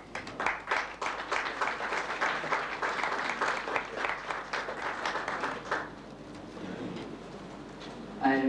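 Audience applauding, dense clapping that dies away about six seconds in.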